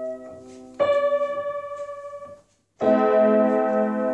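Upright piano chords pressed with a prosthetic chord-playing rig. A chord is struck about a second in and left to ring and fade, the sound cuts out briefly, then a fuller chord sounds near the end and holds.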